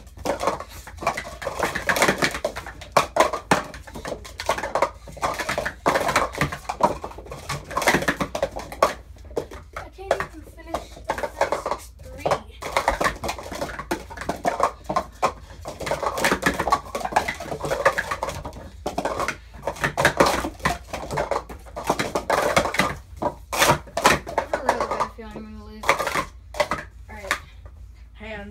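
Plastic sport-stacking cups clacking rapidly and continuously as two stackers build up and take down their stacks in a practice cycle run.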